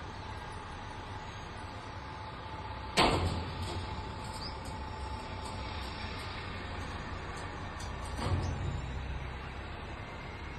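Steady low outdoor rumble with a sudden loud thump about three seconds in that dies away over about a second, and a softer swell of noise a little after eight seconds.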